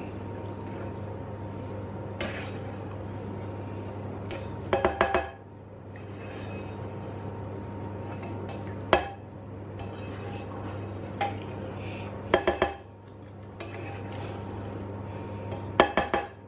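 Metal skimmer scraping flaked salt cod out of a frying pan and clinking against the pans, in short clusters of sharp clinks: a few about five seconds in, one near nine seconds, a few more around twelve seconds and again near the end. A steady low hum runs underneath.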